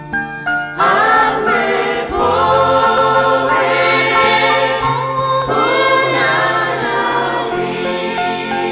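Christian choral song: a few short instrumental notes, then a choir comes in singing just under a second in, with held sung phrases over the instrumental backing.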